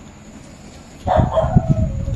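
An animal call, about a second long, starting about halfway in, with low thumps under it.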